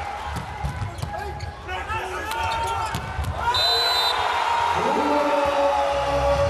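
Volleyball arena sound: a ball struck hard in a jump serve and rally, with many sharp hits over crowd shouts. A short high-pitched tone comes about halfway through, followed by held lower tones near the end.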